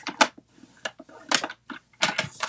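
Stampin' Up paper trimmer scoring black cardstock: the sliding blade head clicks and scrapes along its rail, about four short sharp sounds, the loudest just after the start.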